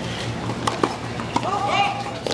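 Tennis ball struck by a racket on a serve and bouncing on a hard court: a few sharp pops, the first two close together about two-thirds of a second in. Near the end a person's voice gives a short call.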